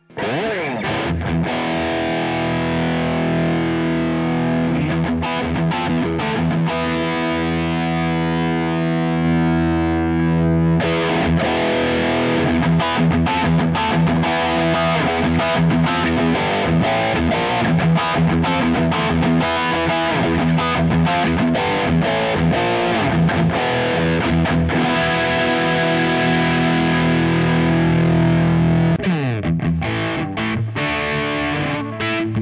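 Distorted electric guitar (Sterling by Music Man SR50) played through a NUX Mighty Space portable amp and heard from its emulated direct output. It comes in suddenly with long ringing notes, then turns to quicker, choppier picking.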